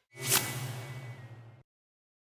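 Whoosh transition sound effect with a low rumble underneath. It swells to a sharp peak about a third of a second in, then fades away over the next second.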